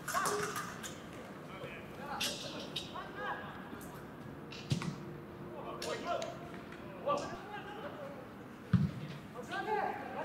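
Football being kicked on a grass pitch, two sharp thuds about five seconds in and near the end, the later one the loudest. Between them players shout short calls to each other, with no crowd noise behind them.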